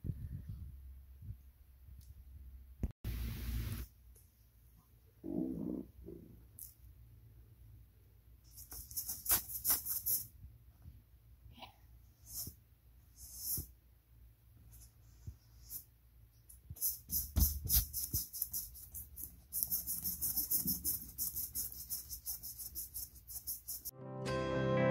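Flat paintbrush scrubbing acrylic paint onto a stretched canvas: dry, scratchy bristle strokes in quick runs, heavier in the second half.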